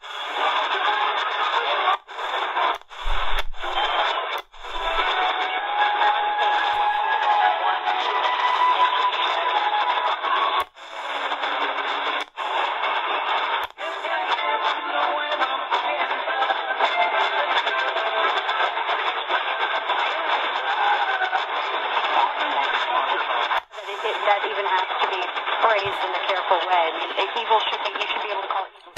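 C.Crane CC Skywave portable radio receiving medium-wave AM broadcast stations through its speaker: speech and music with a narrow, telephone-like sound. The audio is cut by about eight brief dropouts as the tuning is stepped up the band.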